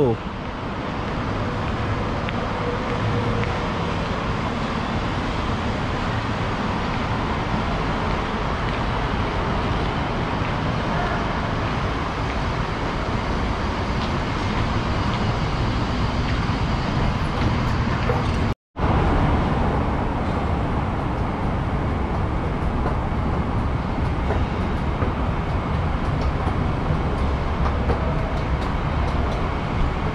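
Steady background noise of road traffic carried into an open-sided station concourse. A sudden, total dropout of a fraction of a second breaks it about two-thirds of the way through.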